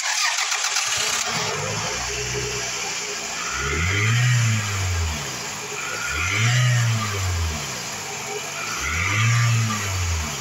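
2003 Toyota RAV4's 2.0-litre VVT-i four-cylinder engine catching and starting, settling to an idle, then revved up and let back down three times, each rev a few seconds apart.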